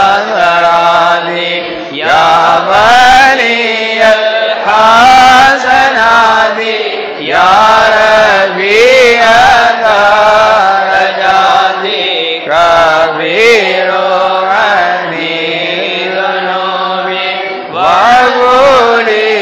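Men chanting a Mawlid recitation in Arabic, a melodic chant with long, wavering notes that run on with few breaks.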